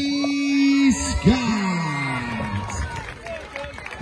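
A ring announcer's amplified voice holding a long, drawn-out note that breaks off about a second in, then a second long call that slides down in pitch and fades, with crowd noise beneath.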